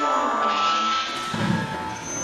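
A musical phone ringtone laid in as an edited sound effect: held electronic tones with no speech over them.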